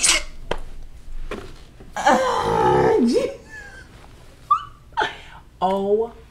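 A woman's loud, breathy wordless cry about two seconds in, lasting about a second and falling in pitch, followed by short vocal sounds and the start of speech near the end.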